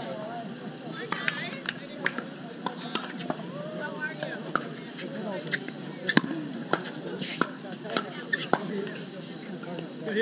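Pickleball rally: a paddle striking the hard plastic ball again and again with sharp pocks at irregular intervals, the loudest about six seconds in. Fainter pocks and a murmur of voices carry on around it.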